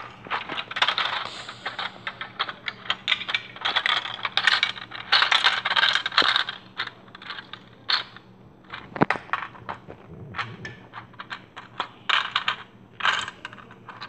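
Small hard plastic Lego pieces clicking and clattering as they are handled and rummaged on a carpet: quick runs of clicks, dense for the first several seconds, sparser in the middle, then a few more bunches near the end.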